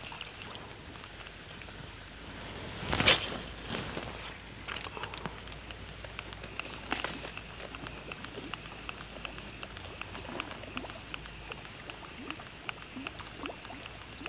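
Steady high-pitched insect drone. About three seconds in comes a short splash-like burst, and faint light ticks and water noises follow as a topwater frog lure is worked across the pond surface.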